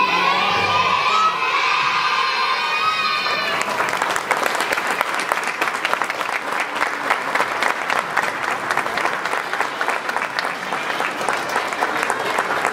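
A group of young children's voices held together for about three and a half seconds, then the audience breaks into steady applause with cheering.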